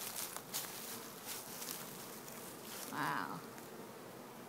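Honey bee swarm buzzing as a bee-covered frame is lifted from a swarm trap, a steady hum with a few light handling clicks in the first second. A short louder swell comes about three seconds in.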